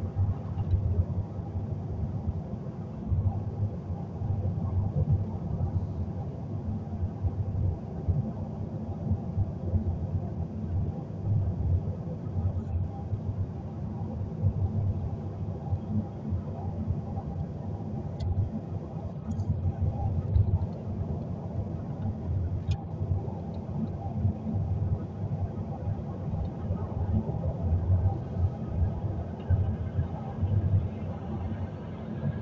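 Steady low road and engine rumble of a car driving at highway speed, heard from inside the cabin, swelling and easing slightly as it goes.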